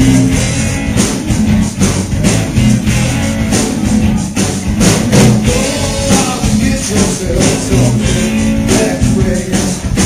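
Live rock band playing: electric guitar over a drum kit keeping a steady beat.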